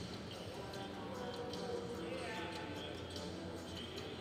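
Horse's hooves thudding on soft arena dirt in a run of short strokes as the horse lopes and comes to a stop, with indistinct voices in the background.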